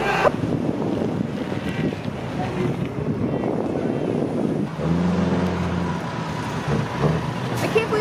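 A motor vehicle's engine running, with a steady low drone for a second or so in the middle, over a rumble of outdoor background noise and wind on the microphone.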